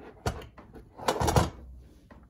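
Hard plastic knocks as an automatic pet feeder's plastic food canister is handled and fitted onto its base: a single light knock, then a louder clatter of clunks about a second in.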